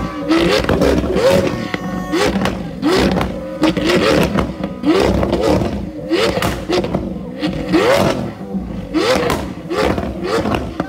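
Lamborghini Aventador's V12 engine revved in quick repeated throttle blips, about one every three-quarters of a second, each a rise and fall in pitch. Sharp pops and crackles from the exhaust come with each blip as the car spits flames.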